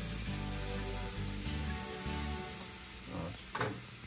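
Blackened fish fillets sizzling steadily in hot oil in a frying pan, under background music with sustained bass notes.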